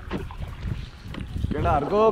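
Wind rumbling on the microphone, with a few faint knocks, then a person starts talking about one and a half seconds in.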